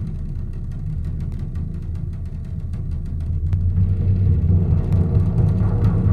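Music played back through a pair of large floor-standing hi-fi loudspeakers, heard in the room, dominated by deep bass and low percussion, swelling louder about four seconds in.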